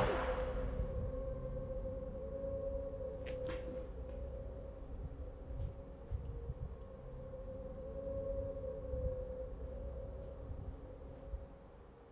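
A heavy metal song cuts off at the start, leaving a faint held drone tone over a low rumble, the quiet outro of a music video, which fades out near the end.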